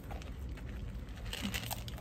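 Sandy soil and small pebbles spilling from a tipped plastic plant pot into a planter: faint, irregular crunching and rustling with a few small clicks.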